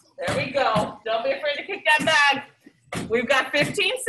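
A woman speaking in short phrases with brief pauses.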